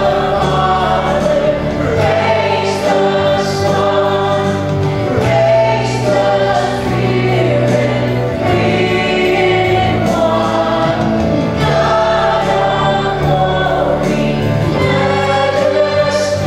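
Live worship band playing a gospel song: a man and a woman sing into microphones over acoustic guitar and flute.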